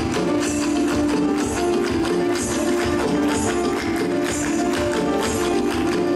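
A Bengali song playing for a dance: a steady melody over a beat, with a bright shaken accent about once a second.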